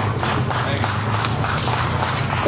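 A small audience clapping irregularly as a live rock song ends, over a steady low hum.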